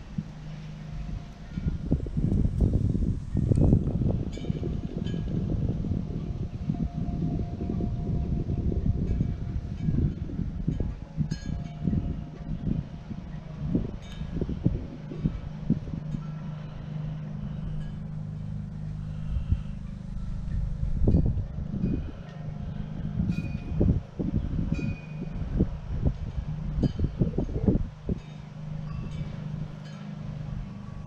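Gusty wind buffeting the microphone outdoors, coming and going in uneven surges over a steady low rumble.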